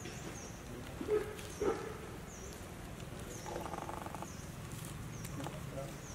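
Outdoor wildlife sounds: a short high chirp repeating about once a second, two louder short sounds in the first two seconds, and a brief pitched call near the middle.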